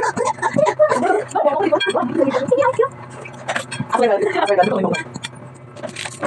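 People talking, mostly in the first half, over a steady low hum.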